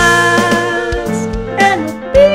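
Upbeat song: a man's voice sings a held note over instrumental backing, with a drum beat about once a second.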